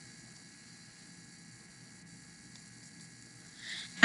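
Quiet room tone: a faint steady hiss with a few faint steady tones, and a brief soft sound near the end.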